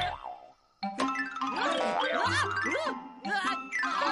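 Cartoon soundtrack: children's music with springy boing sound effects of jack-in-the-box spring toys popping up. It starts after a brief gap about a second in.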